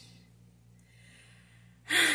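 A woman's sharp, audible intake of breath near the end, after a quiet pause with a faint steady hum.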